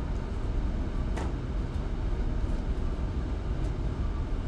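Steady low rumble of room background noise, such as ventilation, with no speech. A single faint click comes about a second in.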